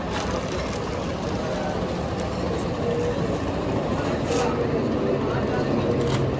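Steady rain falling on a tent canopy and dripping into standing water on the floor.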